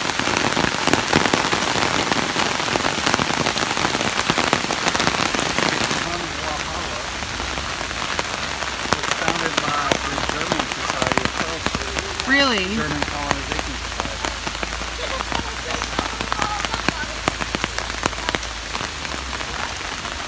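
Steady rain falling on a paved path and on an open umbrella held overhead, a dense patter of drops. About six seconds in it turns quieter and lighter.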